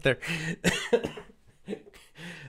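A man laughing in short bursts that break into coughing.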